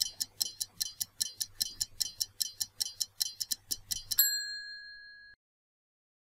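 Countdown-timer sound effect: a clock ticking fast and evenly, about five ticks a second, then a single bell ding about four seconds in that rings for about a second before cutting off.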